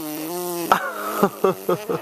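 A toddler blowing a raspberry with his lips, a fart-like noise. It starts as a held buzz and breaks into wet sputters about two-thirds of a second in.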